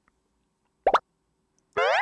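A single short cartoon 'plop' sound effect about a second in: a quick bloop that sweeps upward in pitch. It is set against near silence.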